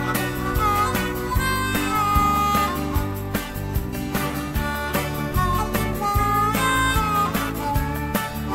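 Instrumental break in a country song: a harmonica lead with bending notes over guitar, bass and a steady drum beat.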